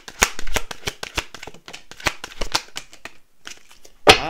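A deck of oracle cards shuffled by hand: a quick, dense run of card flicks and clicks that thins out after about three seconds.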